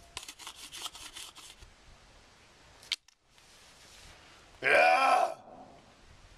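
A wooden stick clicking and scraping rapidly against small stones for about a second and a half, with one sharper knock near three seconds. About five seconds in comes a short, loud groan from a man's voice, the loudest sound here.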